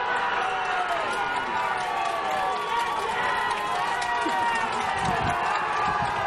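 Many voices shouting and cheering at once in continuous, overlapping calls: a pesäpallo team celebrating a run.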